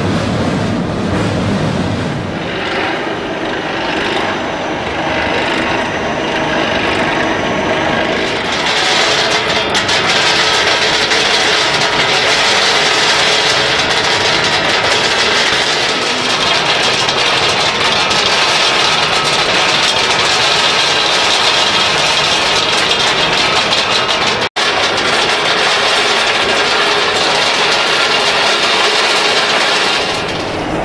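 Steady machinery noise from a cocoa bean processing line, with beans moving over stainless wire-mesh conveyors. The sound gets brighter and louder about eight seconds in, and drops out for an instant about three-quarters of the way through.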